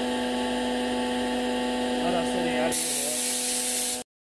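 Air compressor running with a steady hum, joined about two-thirds of the way through by a sudden loud hiss of air, before the sound cuts off abruptly.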